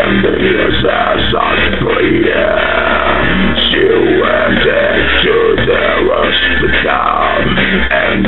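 Loud surf-rock instrumental with electric guitar, playing steadily.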